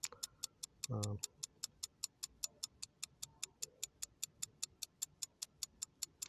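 Clock-ticking sound effect for a countdown timer: sharp, even ticks at about four a second. A brief hesitant 'um' from a man about a second in.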